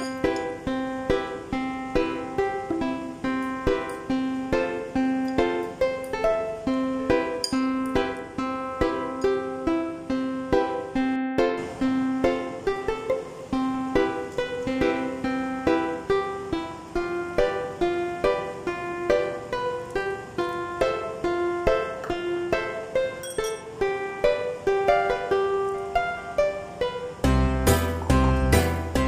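Background music: a light, plucked-string tune with a regular beat. It drops out for a moment about eleven seconds in, and deeper, louder notes come in near the end.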